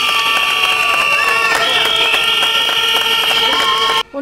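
A protest crowd blowing whistles and horns: several long, steady tones at different pitches overlap and shift now and then, with crowd noise and clapping beneath.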